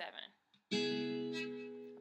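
Taylor GS Mini acoustic guitar: a single C-sharp minor 7 chord strummed about two-thirds of a second in, left ringing and slowly fading.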